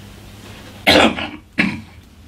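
A man coughing twice: a loud cough just under a second in, then a shorter second one.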